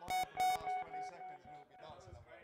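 A brief snatch of music from a vinyl record on the DJ turntables. It opens with two sharp hits and then a ringing, pulsing note that fades away over about a second and a half.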